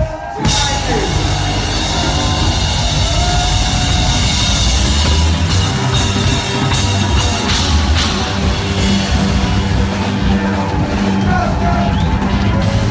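Live rock band playing loud through a club PA, with the drum kit and bass to the fore. It is recorded from within the crowd. The sound drops out for a moment at the very start, then runs on without a break.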